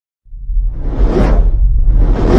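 Cinematic whoosh sound effect over a deep rumble, coming in a quarter second in, swelling to a peak a little over a second in and starting to swell again near the end.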